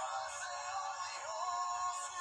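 Recorded pop-rock song with a male lead vocal singing a gliding melody over the band. It sounds thin and tinny, with its low end filtered away.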